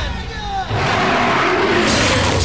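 Cartoon sound effects: a falling whine, then about two-thirds of a second in, a loud noisy rush.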